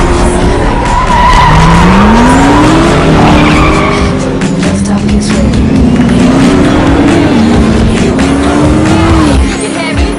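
Sports car engines racing at full throttle, the pitch climbing through the gears and dropping at each upshift, with tyre squeal, mixed over music.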